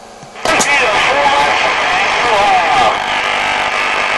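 A distant station coming through a CB radio's speaker: a voice almost buried in loud hiss and static, opening with a key-up click about half a second in.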